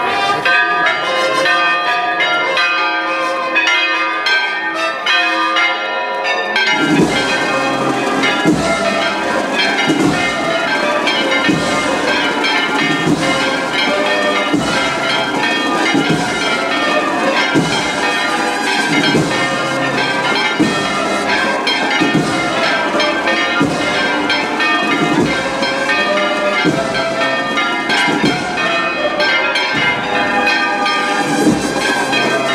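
Church bells pealing. The higher bells ring on their own at first, and about seven seconds in deeper bells join with regular, repeated strikes.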